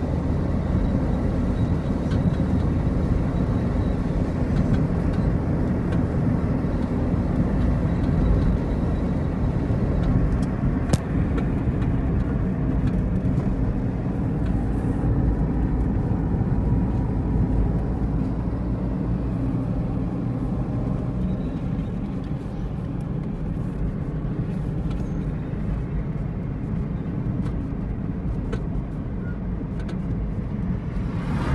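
Car driving on a paved road, heard from inside the cabin: a steady low rumble of engine and tyres, with a single sharp click about eleven seconds in.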